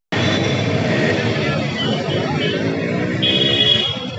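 Street traffic, with an auto-rickshaw's engine running close by and people talking in the background. A short high tone sounds about three seconds in.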